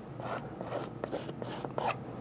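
Palette knife loaded with Van Dyke Brown oil paint scraping and dabbing across a wet canvas in a series of short scratchy strokes.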